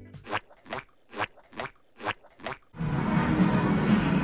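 Six short, crisp percussive hits, evenly spaced a little over two a second. About three seconds in they give way to the steady background noise of a busy room.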